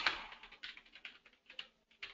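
Typing on a computer keyboard: a quick, irregular run of key clicks, just after a brief louder noise that fades at the very start.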